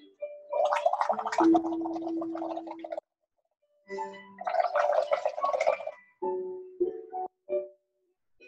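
Bubbling from blowing through a straw into a paper cup of soapy paint water: two long bouts of gurgling bubbles, each two to three seconds, with a short pause between, then a few brief puffs.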